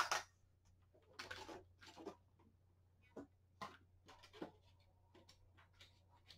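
Faint, scattered rustles and light taps of paper sheets being handled on a drawing board, over a low steady hum.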